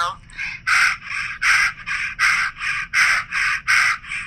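A person panting rapidly through the open mouth with the tongue stuck out, the 'dog pant' breathwork exercise, a breath of fire through the back of the throat. The breaths come in an even rhythm of about three a second, alternating louder and softer, starting about half a second in.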